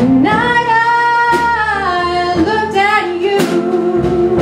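A woman singing a long held note, sliding up into it and falling away about halfway, then a shorter sung phrase, over a band accompaniment in a slow ballad.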